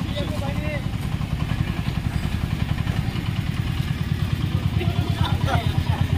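Motorcycle engine idling, a rapid low throb that grows louder near the end, with people talking over it.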